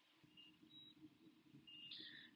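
Near silence: faint room tone with a low hum and a few very faint brief high tones.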